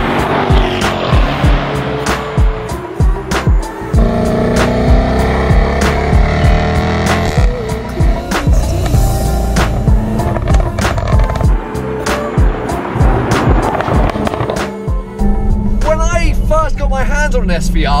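Background music with a steady beat over a Jaguar F-Type SVR's supercharged V8 accelerating, its pitch rising. Near the end the engine drones steadily as heard from inside the cabin, and a man's voice comes in.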